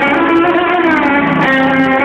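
Live band music at steady full volume, with a violin among the instruments playing long, held notes that slide in pitch.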